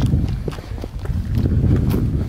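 Footsteps on a gravel road, a run of uneven steps over a steady low rumble.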